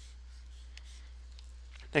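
Faint scratching of a stylus on a pen tablet while a box is drawn, over a low steady hum. A man's voice starts right at the end.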